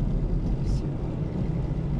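Steady low road and engine rumble of a car driving along, heard from inside the cabin, with a brief hiss a little under a second in.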